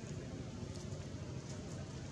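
Steady low outdoor background rumble, with a few faint soft clicks.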